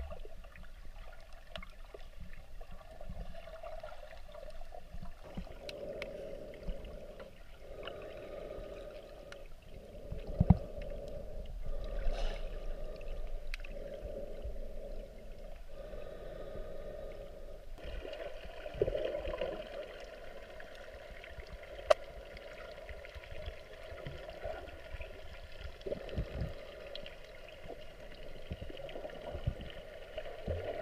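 Muffled underwater sound from a GoPro held under the water: water sloshing and gurgling around the camera housing, with a few sharp knocks, the loudest about ten seconds in and again about twenty-two seconds in.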